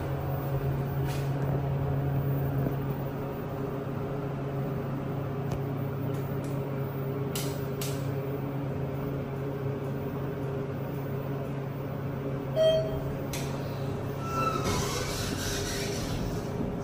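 Steady low hum of a TK Endura hydraulic elevator running, heard from inside the car. A short electronic beep comes about twelve and a half seconds in, a second, higher tone a couple of seconds later, and noise starts to rise near the end.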